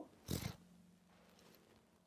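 A short breath by the speaker about a quarter second in, then near silence with a faint steady low electrical hum.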